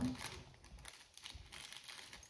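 Faint crinkling and rustling of handled packaging as a keychain is brought out.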